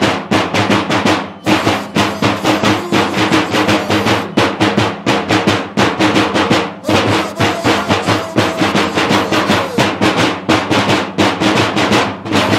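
Drums of a Romanian bear-dance troupe beaten hard in a fast, steady beat, with a short break about a second and a half in and another near the middle.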